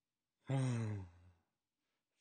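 A man's short sigh, falling in pitch, about half a second in and lasting roughly half a second.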